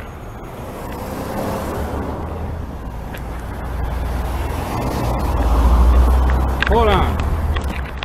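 A car passing close by, its low rumble building to its loudest about six seconds in. A man gives a short shout just after.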